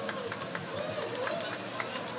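Scattered hand-clapping, with voices talking over it.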